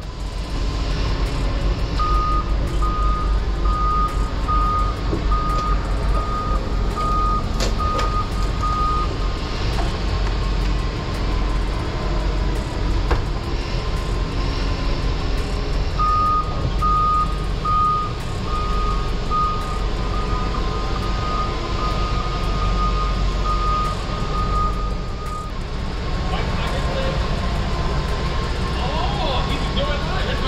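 Forklift warning alarm beeping at a steady pitch in two long runs while the truck works, over a steady low rumble.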